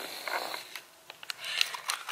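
Faint rustling with a few small clicks: handling noise from a handheld camera held close to the body.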